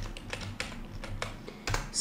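Computer keyboard being typed on: a quick run of irregularly spaced key clicks as a command is entered.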